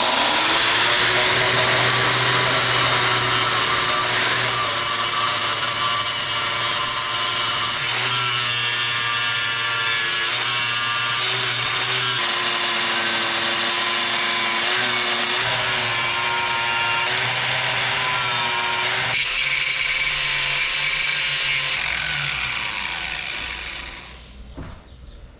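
Angle grinder spinning up and cutting into a steel knife blank clamped in a vise, its motor pitch wavering as the disc bites the steel. It winds down near the end.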